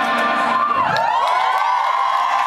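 Audience cheering and screaming as a live rock song ends. Many voices whoop with rising and falling pitches, swelling in about a second in as the band's last notes die away.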